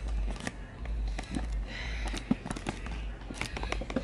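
Handling noise from a handheld camera's microphone: irregular crackles, clicks and rubbing as it moves against clothing, over a low rumble.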